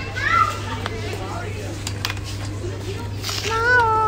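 Baby vocalizing: a brief high rising-and-falling squeal about a quarter second in, then a longer arching coo near the end, over a steady low hum.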